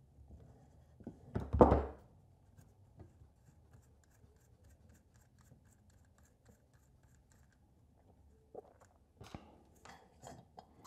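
Small handling sounds of metal pliers and a lamp switch's threaded retaining nut being loosened and turned by hand. A brief, loud knock and scrape comes about a second and a half in, then faint ticks, with a few sharper clicks near the end.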